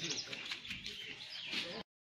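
Many birds chirping busily over the murmur of a crowd's voices; the sound cuts off abruptly near the end.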